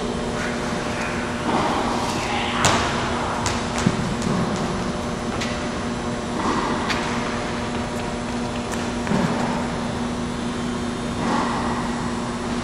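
Steady hum of ventilation in a large indoor court, with a couple of sharp knocks a few seconds in and faint, distant voices.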